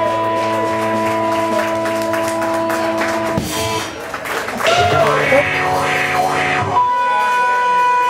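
Live Mississippi juke-joint-style blues: electric guitar ringing out held notes and chords over drums, with bent, wavering notes about five seconds in.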